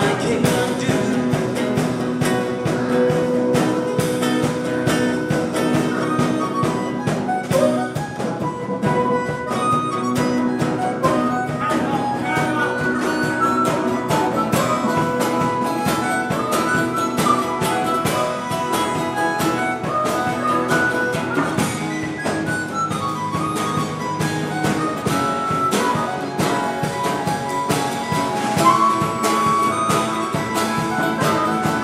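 Blues-rock trio playing live: a harmonica cupped together with a handheld microphone plays the lead line over acoustic guitar and a drum kit.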